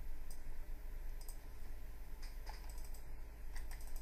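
Scattered clicks and taps of a computer mouse and keyboard, with a quick run of taps near the end, over a steady low hum.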